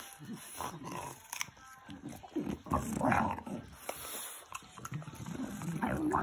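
French bulldog eating a piece of apple from a hand: wet chewing and noisy breathing through its short snout, in irregular bursts with a few crisp bites, loudest about halfway through.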